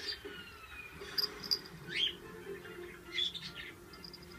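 A small bell on a kitten's cloth toy tinkling faintly in short high pings as the kitten bats and mouths it, loudest about a second in and again near two seconds.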